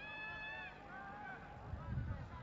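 Faint stadium crowd sound: one high call held for most of a second, then a shorter call from the sparse stands, over a low background rumble.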